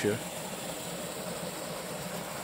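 Steady rush of a small waterfall spilling into a rocky pool.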